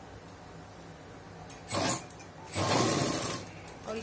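Domestic sewing machine stitching through folded cotton fabric in two short runs, a brief one about one and a half seconds in and a longer one about a second later. The short runs are sewn to secure the seam firmly.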